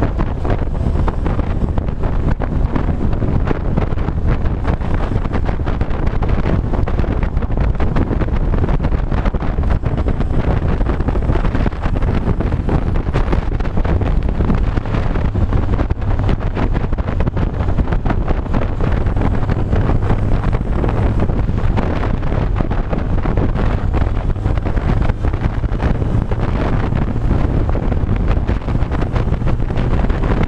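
Wind rushing over the microphone of a motorcycle riding at road speed, with the bike's engine running steadily underneath. The noise is loud and even throughout, with no distinct knocks or changes.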